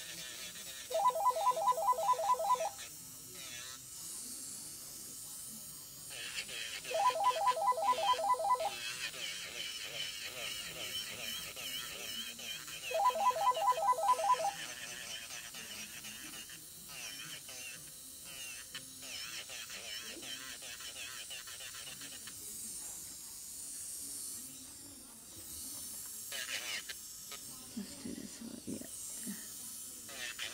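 Mobile phone ringtone: three bursts of rapid beeping, each about a second and a half long and about six seconds apart, over background music and talk.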